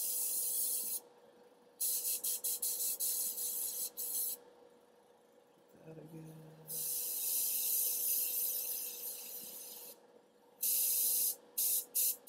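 Airbrush spraying paint in bursts of hiss as the trigger is pressed and released, about five sprays with short gaps between. The second one flickers on and off as the trigger is worked. A faint steady hum runs underneath.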